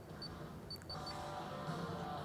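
Alpine iNA-W900 in-dash receiver giving short high electronic key beeps, four in the first second, as its volume is stepped up. Faint music plays through the car's speakers and grows a little louder toward the end.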